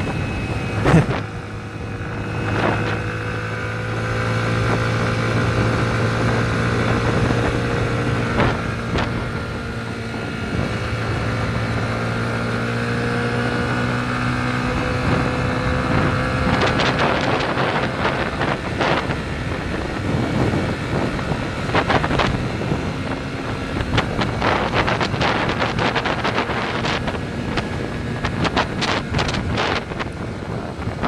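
Yamaha 150cc single-cylinder motorcycle engine running at a steady cruise, its note drifting gently up and down with road speed, with wind rushing over the camera microphone. From about halfway there are frequent short, sharp crackles.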